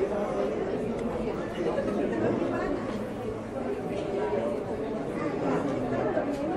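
Indistinct chatter of many overlapping voices filling a large supermarket, a steady crowd murmur with no single voice standing out.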